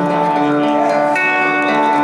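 Acoustic guitar playing a slow picked passage live through a PA, its notes held and left to ring.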